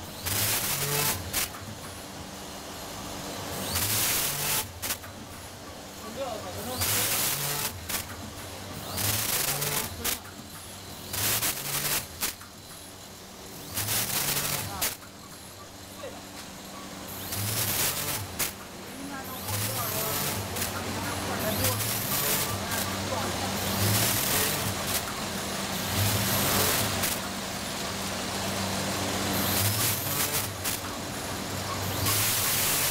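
Automatic vertical bag-packaging machine cycling, with sharp bursts of hissing noise every two to three seconds over a steady low hum.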